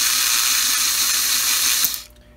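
Electric motor and gears of a Gilbert HO steam locomotive running with its wheels spinning free, a steady high whir that cuts off suddenly near the end as the mechanical reverse drum is cycled into neutral.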